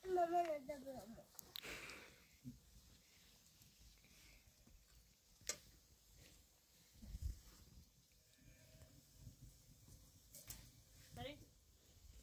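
A short wavering call in the first second, then quiet with a few faint sharp clicks and taps.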